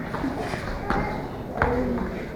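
Children's taekwondo free sparring: bare feet stepping and kicking on foam mats, with two sharp knocks of impact about a second and a half in, over faint voices in the room.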